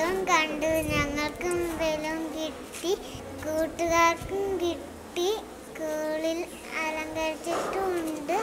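A young girl singing unaccompanied: a simple tune in held notes, broken by short pauses.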